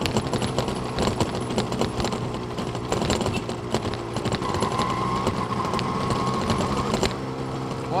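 Yamaha DT200R's single-cylinder two-stroke engine running at a steady, gentle cruising speed on the move. A steady high whine sounds for a few seconds midway.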